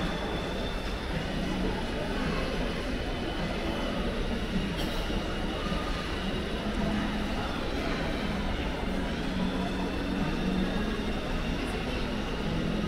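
Shopping mall concourse ambience: a steady low rumble of background noise with faint, indistinct voices carried through a large, hard-surfaced hall.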